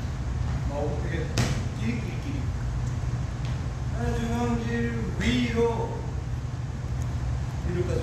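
A man's voice in short, held notes about four to six seconds in, and a sharp knock or clap about a second and a half in, over a steady low hum.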